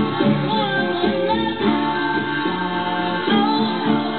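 A Yamaha steel-string acoustic guitar strummed in a steady rhythm, playing chords.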